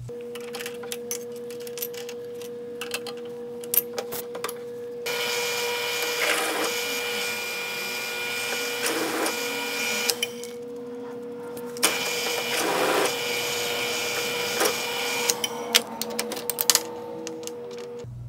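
Drill press running with a countersink deburring bit cutting chamfers into drilled holes in quarter-inch mild steel: a steady hum with two rough, buzzing cuts of about five and three seconds, separated by a short pause. Scattered light clicks come before the first cut and after the second.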